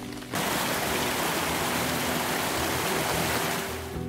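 Rain falling, a steady even hiss that comes in abruptly about a third of a second in and eases off near the end.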